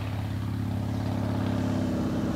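A car engine running at a steady pitch, slowly growing louder.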